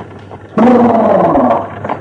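A single loud, drawn-out voiced call of about a second, starting about half a second in, its pitch holding steady and then sinking slightly as it fades.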